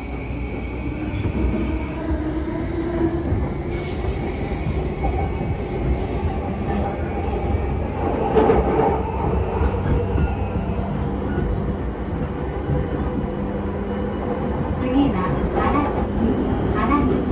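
JR Yamanote Line E235-series electric train running, heard from inside the passenger car: a steady rumble of wheels on the rails with thin whining tones over it, swelling to a louder rush about halfway through.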